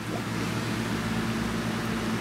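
Steady background hiss with a low hum and a faint, steady held tone, like a running fan or air handler; no clear events.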